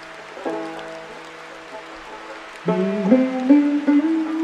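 Slow solo banjo over a steady rain hiss: a plucked note rings out about half a second in, then a louder run of notes steps upward in pitch near the end.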